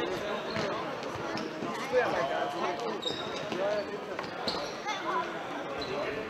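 Futsal ball being kicked and bouncing on a hard sports-hall floor in a few sharp knocks, the loudest about two seconds in, while players call out to each other.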